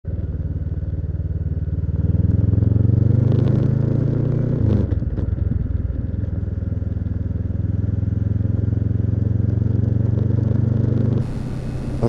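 2013 Honda CB500X's parallel-twin engine running through a Staintune exhaust as the bike is ridden. It gets louder under throttle from about two seconds in, shifts abruptly near five seconds in, then runs steadily.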